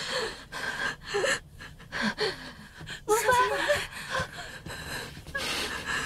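A woman gasping and breathing hard in distress, with brief whimpering voice sounds a few seconds in.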